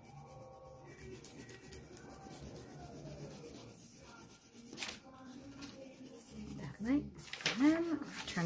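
Wax crayon rubbed back and forth on drawing paper in quick, dry scratchy strokes, with a single sharp tap about five seconds in.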